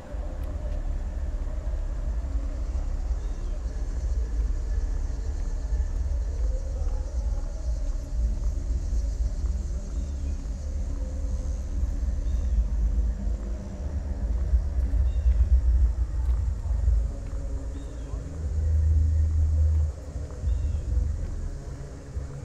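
Outdoor street ambience beside a busy road: a steady low rumble of traffic and wind on the microphone that swells briefly near the end, with faint high chirps over it.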